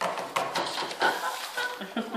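Crisp apple flesh crunching and cracking in a run of irregular snaps as a stainless-steel apple slicer-corer is pressed down through a large apple.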